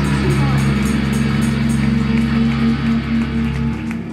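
Live rock band, distorted electric guitars and bass holding a ringing chord over drum and cymbal hits. The chord stops suddenly just before the end.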